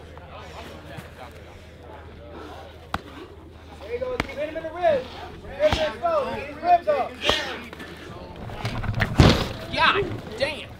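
Onlookers shouting during a gloved fist fight, with several sharp smacks of blows landing and one heavier slam about nine seconds in.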